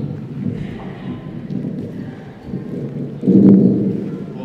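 Loud, muffled low rumbling from a handheld microphone being handled, loudest near the end.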